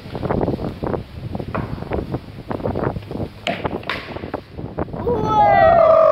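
Children's voices chattering and calling during a game of street cricket, then, about five seconds in, a long, loud shout that slides down in pitch.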